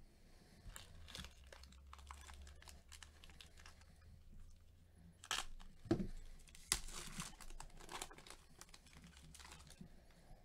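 Foil wrapper of a 2014 Bowman baseball card pack crinkling and tearing as it is handled and ripped open by gloved hands, the loudest crinkling coming about five to eight seconds in.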